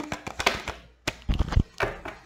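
Baralho cigano (Lenormand) cards being shuffled and drawn by hand: a string of sharp card snaps and clicks, with a couple of dull thumps about a second and a half in.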